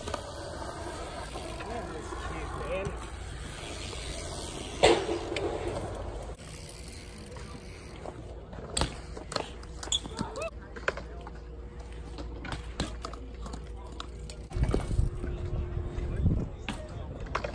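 BMX bike riding on concrete skatepark ramps: a sharp bang about five seconds in, scattered clicks and knocks, and a louder stretch of rolling and impact noise near the end, with people talking in the background.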